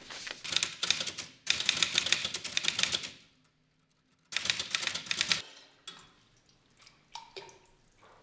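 Manual typewriter being typed on in three quick bursts of rapid key strikes, with a short pause before the last burst, then only a few fainter clicks.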